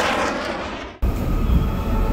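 A swelling whoosh fades out over the first second and is cut off abruptly. It is followed by the steady low rumble of a moving passenger train, heard from inside the carriage.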